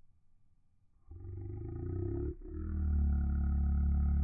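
A deep, drawn-out pitched drone that starts suddenly about a second in, breaks off briefly just after two seconds, then returns louder. It sounds like audio slowed down along with slow-motion video.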